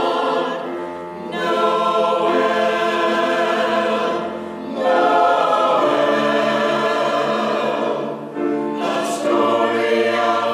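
Mixed church choir singing an anthem in sustained chords, phrase by phrase, with short breaks between phrases about a second, four and a half and eight and a half seconds in.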